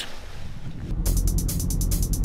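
A low rising swell, then background music comes in about a second in with a fast, even ticking beat over heavy bass.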